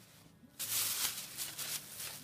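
Rustling from handling the fabric and phone, starting about half a second in and going on unevenly.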